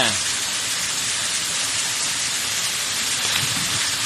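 Waterfall pouring into a rock pool: a steady, even rush of falling water.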